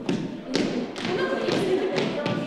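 Thuds in a steady beat about twice a second, like feet and hands marking counts in a dance rehearsal.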